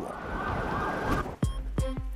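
Sound-design effects for a documentary transition: a steady high tone over a rushing noise that cuts off after about a second, then two sharp hits with a deep boom.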